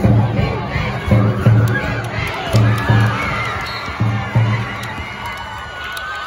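Basketball crowd cheering and shouting over a repeating beat of two deep thumps about every second and a half, which stops about four and a half seconds in.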